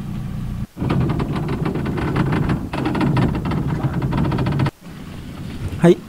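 Rough, steady noise of a fishing boat's outboard motor, mixed with rumble and crackle like wind on the microphone. It breaks off briefly twice, under a second in and again near five seconds.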